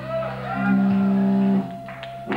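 Amplified electric guitar holding sustained notes with some pitch bends, a loud held tone cutting off sharply about one and a half seconds in, followed by a short lull before the band comes back in.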